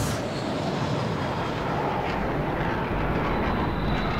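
Steady roar of a fighter jet's engines as it flies low past, with a faint high whine in the last second.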